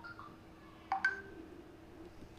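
Short electronic beeps: a faint pair at the start and a louder beep about a second in, over a faint steady hum.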